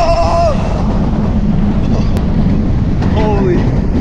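Heavy wind rush and rumble on the microphone of a roller coaster in motion. A rider's held yell ends about half a second in, and a short falling shout comes at about three seconds.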